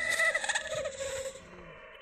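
A warbling sound effect of several held, wavering tones over a high hiss, fading out over about a second and a half.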